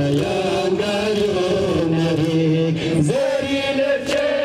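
Men's voices chanting a noha, a Shia mourning lament, in long held notes that bend from one pitch to the next, with a few faint slaps of chest-beating (matam).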